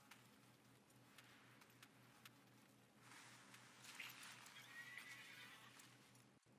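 Horses galloping and whinnying in the anime's soundtrack, played back very faintly, with a rushing noise that grows louder about halfway through.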